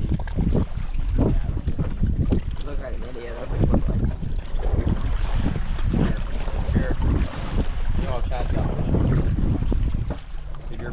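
Wind buffeting the microphone on a small boat at sea, with the gusting low rumble of wind noise over the sound of open water.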